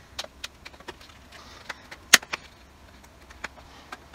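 Hands taking the cardboard J-card off a 4K steelbook: light rustling and scattered small clicks and taps against the case, with one sharper click about two seconds in.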